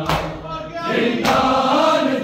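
Men chanting a noha, a Shia mourning lament, together in unison. Chest-beating (matam) slaps land in time with it, one at the start and another a little over a second later.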